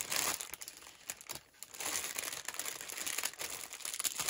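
Clear plastic packaging of a cross-stitch kit crinkling as it is handled, in irregular spells with a short pause about a second and a half in.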